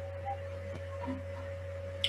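Low steady electrical hum with a faint steady higher tone over it: the recording's background room tone, with no other sound.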